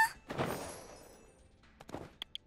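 Cartoon sound effects: a dull thunk about half a second in with a faint high ringing that fades away, then a few small sharp clicks near the end as a toy record player is worked by hoof.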